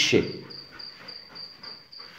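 A cricket chirping steadily, about four high chirps a second. At the very start a man's spoken command cuts over it and fades within a moment.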